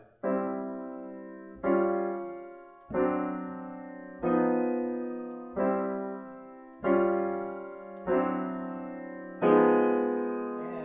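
Grand piano playing a slow stride left-hand pattern of bass notes and chords moving through their changes. There are eight evenly spaced strokes about 1.3 seconds apart, each left to ring and fade before the next.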